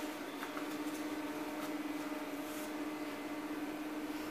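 Quiet room tone: a steady low hum with a few faint, brief rustles.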